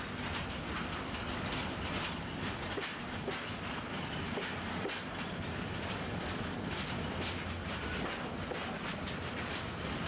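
Intermodal freight train of container and tank-container flat wagons rolling past at a steady pace, its wheels clicking irregularly over rail joints.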